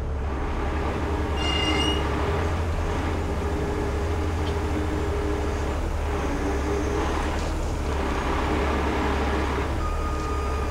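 A 50-ton rotator wrecker's diesel engine runs steadily with a steady hydraulic whine as its boom and winch hold and ease down a suspended load. A brief high squeal comes about a second and a half in.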